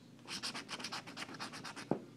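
A coin scraping the coating off a scratch-off lottery ticket in a run of short, rapid strokes, with one sharp tap near the end.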